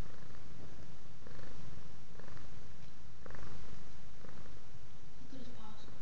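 Domestic cat purring steadily, close up, a continuous low rumble that swells about once a second.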